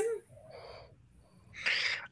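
A short, faint vocal sound about half a second in, then a breath drawn in near the end, just before the next line is spoken.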